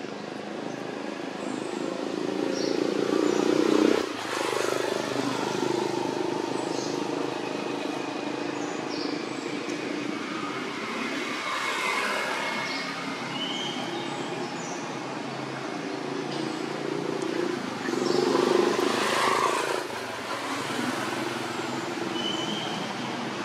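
Outdoor background sound: a steady low motor hum that swells and fades twice, with short high bird chirps scattered through it.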